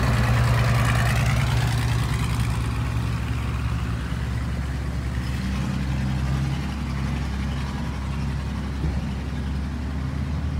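Longtail boat's engine running steadily with a low, even drone, its note shifting about halfway through. Water and wind hiss rides over it, strongest in the first couple of seconds.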